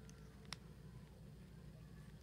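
Near silence with a low room hum, broken by one short sharp click about half a second in, from a plastic Bakugan toy ball being handled.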